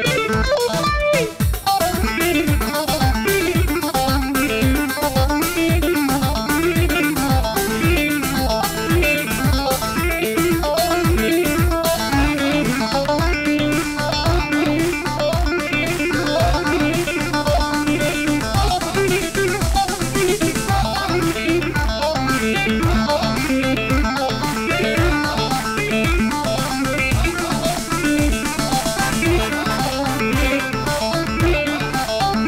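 Live Kurdish wedding band music for a hand-in-hand line dance: a plucked electric string instrument plays a fast melody over a steady drum beat.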